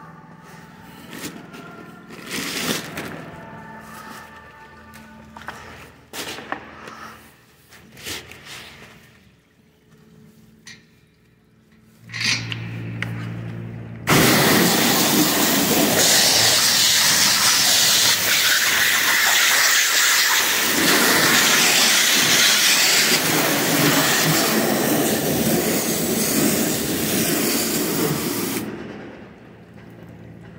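High-pressure water spray from a wash wand, a loud steady hiss of water hitting a rag and the steel floor grating. It starts suddenly about halfway through and stops shortly before the end, and is preceded by a brief low hum and scattered knocks.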